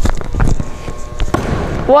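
Sneakers landing on a hardwood gym floor after a jump shot: a few short knocks over steady gym room noise.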